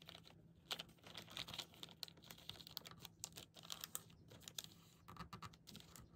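Faint, irregular crinkling and tapping of a white paper bag being folded and pressed flat by hand on a table.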